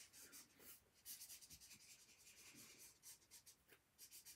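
Faint scratching of a felt-tip marker on sketchbook paper, a run of short, uneven strokes.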